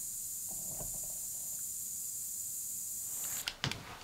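Two handheld facial mist sprayers misting onto a fluffy microphone cover, making a steady high hiss that stops about three and a half seconds in, followed by a few faint clicks.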